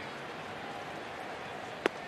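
Steady ballpark crowd murmur, then near the end a single sharp pop as the pitched baseball hits the catcher's mitt for strike three.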